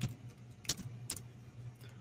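A few sharp, irregular computer-keyboard keystrokes over a low steady hum.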